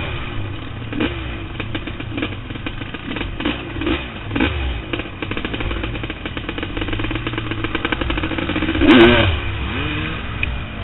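Off-road vehicle engine running with the throttle worked on and off, its pitch swinging up and down several times over the ride's clatter. About nine seconds in comes a sharp knock and a hard, loud burst of revving.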